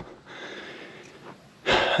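A man breathing out softly close to the microphone during a pause in his talk, then a quick, sharp breath in just before he speaks again near the end.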